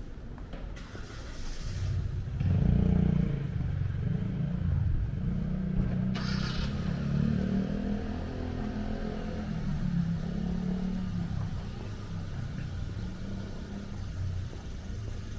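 A motor vehicle's engine running close by: a low rumble that swells about two and a half seconds in and then holds, wavering in pitch.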